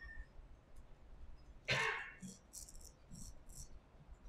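A person drinking from a handheld cup: a short, noisy sip or breath about two seconds in, then a few faint, brief rattles.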